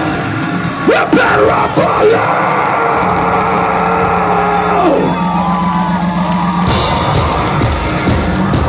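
Industrial band playing live at full volume, the singer yelling into the microphone over a held synth drone; near the end the music shifts into a pounding electronic beat.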